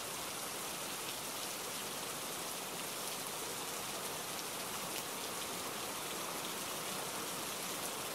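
Steady, even rain-like hiss with no rhythm or pitch, starting abruptly and holding at one level throughout.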